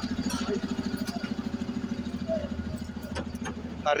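A vehicle's engine idling with a steady, fast throb that eases slightly near the end.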